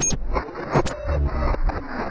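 Electronic intro sting of sound effects: a dense, bass-heavy rush that starts suddenly, with a couple of sharp hits a little under a second in.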